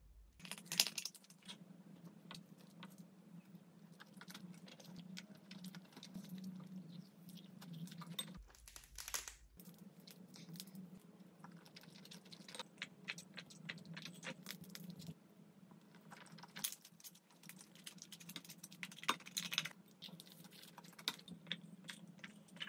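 Close-up eating sounds of soy-marinated raw crab and rice: chewing and crunching of crab shell, with scattered small clicks of a spoon on a bowl. A steady low hum runs underneath.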